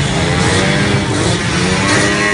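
Many small motorcycle and scooter engines running together as a convoy rides past, a steady mixed drone.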